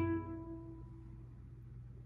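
A single nylon-string classical guitar note, the final note of an E minor scale, ringing out and fading away over about a second.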